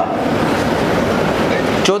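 Audience clapping: a dense, steady patter of many hands that starts and stops abruptly.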